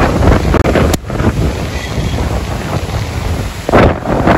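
Wind buffeting the microphone: a loud, uneven low rumble that swells and falls in gusts. It briefly drops out just over half a second in.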